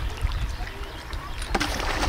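River water sloshing against a driftwood log at the bank, under a steady low wind rumble on the microphone; a short splashing rush comes near the end.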